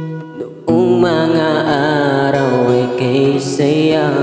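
A man singing a Tagalog ballad over acoustic guitar. The guitar rings alone for a moment, then the voice comes in under a second in with a slow, wavering melody.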